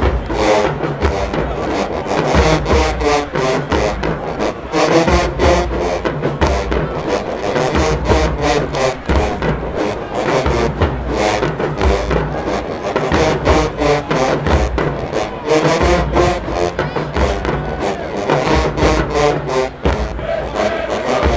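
Marching band playing in the stands: brass over a steady drum beat.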